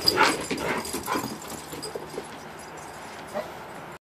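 A dog whimpering in a few short cries during the first second or so, then quieting, with one brief sound near the end.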